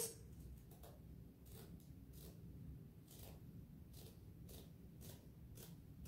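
Scissors cutting across a sheet of burlap: faint, regular snips, about two a second.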